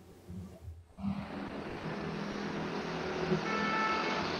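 City street noise picked up by a phone's microphone and heard over a video call: a steady wash of traffic noise that comes in about a second in, after a near-silent start, with a few faint steady tones near the end.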